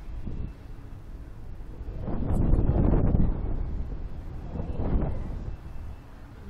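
Wind buffeting the microphone of a camera on a swinging reverse-bungee ride capsule. It swells into a loud rumble about two seconds in, eases off, and gusts again near the end as the capsule bounces on its cords.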